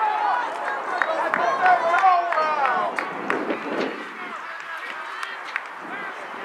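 Several people shouting and calling out across an outdoor soccer field, the voices overlapping and loudest in the first three seconds, then fading to quieter chatter, with a few short sharp knocks.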